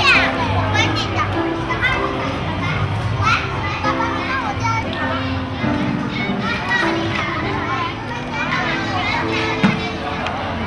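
Many children chattering and calling out at play, their high voices overlapping, over background music with held notes.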